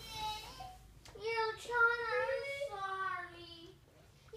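A young child's voice singing without words in long, wavering high notes, the last one sliding down near the end.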